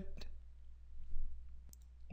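A few brief, faint clicks over a steady low electrical hum. One click comes about a fifth of a second in, and two more come close together near the end.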